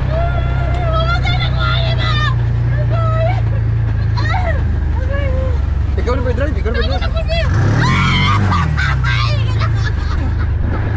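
Side-by-side UTV engine running steadily under way, revving up and back down about eight seconds in, with a woman's excited voice shrieking and calling out over it.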